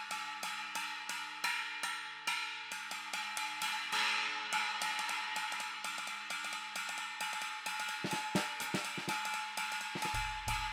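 A 17-inch Sabian SR2 china cymbal in B20 bronze, struck repeatedly with a wooden drumstick at about three or four hits a second. The strikes run together into a continuous ringing wash, with a few heavier hits near the end.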